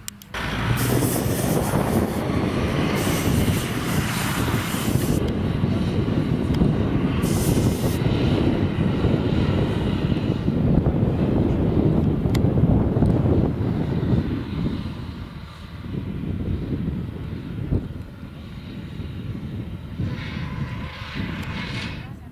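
An SUV's engine running hard under load as it climbs a loose sand slope, wheels spinning and flinging sand. It eases off briefly about two-thirds of the way through, then pulls on again.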